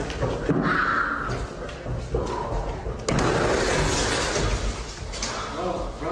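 A man sprinting down a carpeted corridor falls hard: a sudden heavy thud about three seconds in, followed by a couple of seconds of scuffing, crashing noise.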